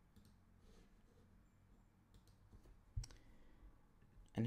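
Near silence with a few faint clicks of a computer mouse, and one sharper click about three seconds in as the text cursor is placed in the code.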